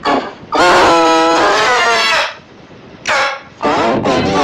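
A child's screaming cries run through 'G Major' pitch-shift effects, which layer the voice into a chord that sounds like a horn. One long held cry lasts about a second and a half, followed by a short cry and then another cry starting near the end.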